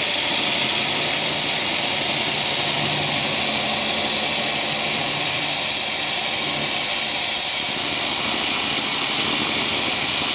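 Everlast RedSabre 301 pulsed laser cleaner ablating grime off a cylinder head, a steady high hiss with no breaks, over the rush of a fume extractor's airflow.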